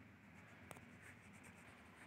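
Faint scratching of a coloured pencil shading on a paper workbook page, with one light tick about two-thirds of a second in.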